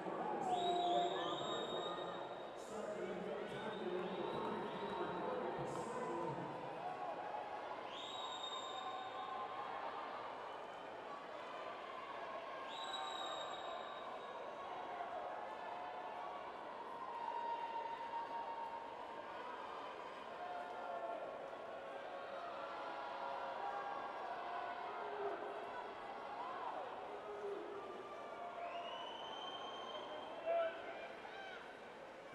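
Spectators at a swimming race cheering and shouting over one another in a steady, indistinct wash of voices, with about five shrill whistle-like tones, most of them in the first half and one near the end.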